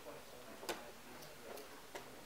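One sharp click about two-thirds of a second in, then a few faint taps, from blitz chess play: pieces set down on a wooden board and a digital chess clock being hit. It is a time scramble, with one player down to a few seconds on the clock.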